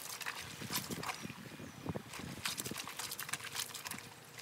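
Wet, soapy clothes scrubbed together by hand in a plastic basin of water: irregular rubbing and squelching strokes, a few a second.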